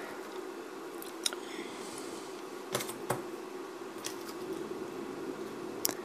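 A handful of faint, short clicks as multimeter test-lead probes are handled against the pins of a logic analyzer's cable harness, over a steady low hum.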